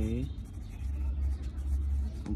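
A steady low rumble in the room, with faint scratching of a pencil writing on paper.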